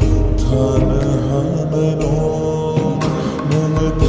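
Bodo-language song: a voice singing long held notes over a bass-heavy backing track, with occasional drum hits.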